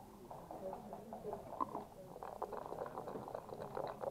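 Backgammon dice rattling in a dice cup: a quick, uneven run of small clicks, densest in the second half, over a low murmur of voices.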